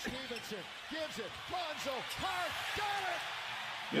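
Basketball game broadcast audio at moderate level: a ball bouncing on a hardwood court, with a string of short rising-and-falling squeaky tones and a voice underneath.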